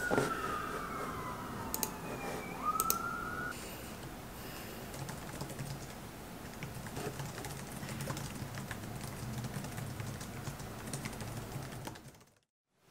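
Laptop keyboard being typed on softly, with a few sharp clicks. Over the first few seconds an emergency-vehicle siren wails, its pitch falling and then rising again before it stops.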